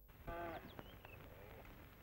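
Faint outdoor ambience with one short animal call near the start, followed by a few faint high chirps like small birds.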